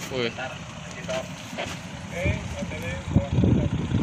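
Low, steady marine engine rumble heard from the deck of a vessel under tow by a tugboat, with faint voices. About three seconds in, wind starts buffeting the microphone and the rough low noise grows louder.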